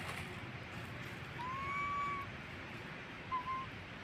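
Baby monkey giving coo calls: one long, clear call that rises and then holds its pitch for about a second, then a short call near the end.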